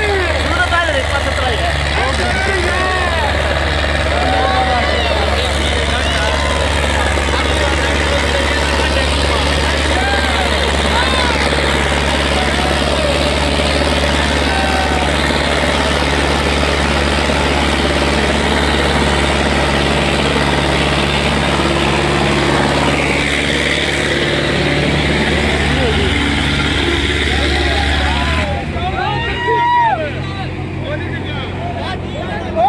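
Sonalika 750 tractor's diesel engine running hard under heavy load as it drags two disc harrows through ploughed soil, a steady deep drone that falls away near the end as the run finishes. Spectators shout over it.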